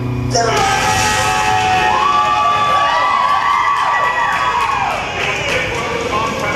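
Music cuts off just after the start, and a crowd cheers and shouts, with long high whoops that rise and fall over the noise.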